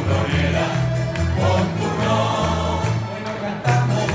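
Live Canarian folk music: a string band of acoustic guitars and smaller plucked lute-type instruments playing with a mixed choir of voices singing together.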